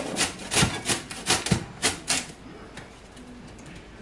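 Horseradish root grated on a metal box grater: quick rasping strokes, about three to four a second, that turn faint about halfway through.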